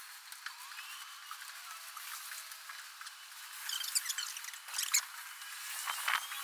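Paint rollers on extension poles working paint across a bus's floor, a soft wet squishing, with a few sharp clicks about two-thirds of the way in.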